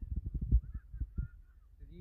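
Irregular dull thumps and knocks on the phone's microphone as it is swung round and jostled, with faint distant shouting.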